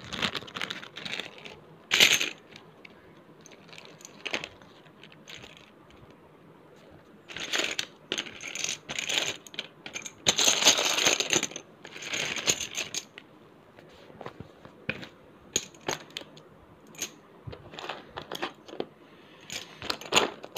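Small plastic Spellex Junior letter tiles clicking and clattering against one another and the cardboard game box as they are scooped up by hand and dropped into a plastic bag. The clicks come in scattered bursts, with a denser rattle about ten seconds in.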